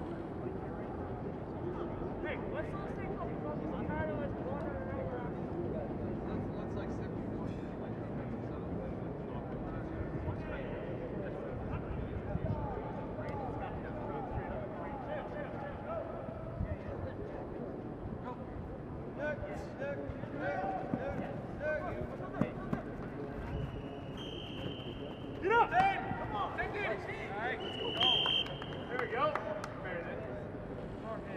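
Distant, overlapping voices of players talking and calling across an open field, with louder shouts near the end. Two short, steady high whistle tones come near the end.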